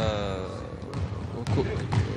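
A basketball bouncing on a wooden gym floor, a few dull thuds in the second half.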